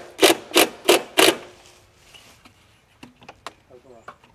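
A person laughing in breathy bursts, about three a second, dying away after a second and a half, followed by a few light clicks.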